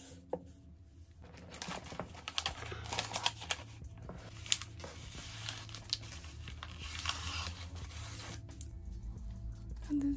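Tissue paper crinkling and rustling in a run of short crackles as a wrapped bundle is handled and lifted out of a box; the crackling stops near the end.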